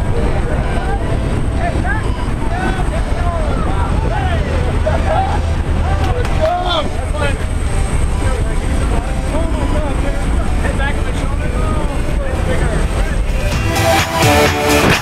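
Steady engine and wind noise inside a propeller jump plane's cabin at altitude, with people shouting over it.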